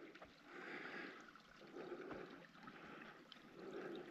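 Near silence: faint outdoor ambience with soft noisy swells about once a second.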